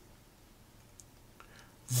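Near silence: quiet room tone in a pause between spoken sentences, with two faint short clicks about a second in. A man's voice starts again right at the end.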